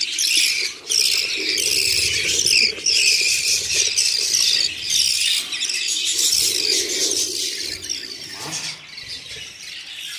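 Budgerigar chicks in an opened nest box giving a fast, unbroken run of high, squealing begging calls, several a second, easing off over the last couple of seconds.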